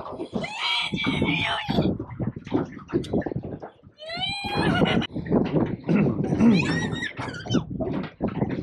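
High-pitched laughing and squealing in several bursts, with the pitch swooping up and down.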